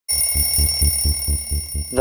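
Twin-bell alarm clock ringing, a steady bell tone pulsing about four times a second.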